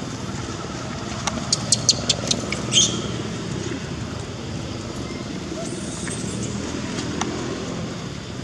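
Steady low outdoor rumble, with a quick run of sharp clicks between about one and three seconds in.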